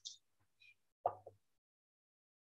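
A few brief, faint noises from a participant's microphone on a video call: a short hiss at the start, then a soft plop about a second in, each bringing a faint hum with it.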